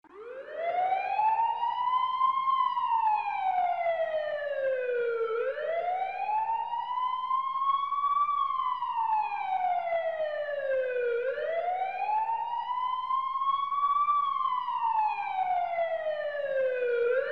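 Red Crescent ambulance siren starting up and wailing in slow rise-and-fall cycles, each pitch climbing for about two and a half seconds and sliding down for about three, repeated about three times.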